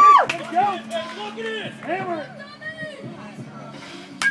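Spectators calling and shouting after a home run, the loudest shout at the very start and the voices dying down after it. A single sharp knock about a third of a second in.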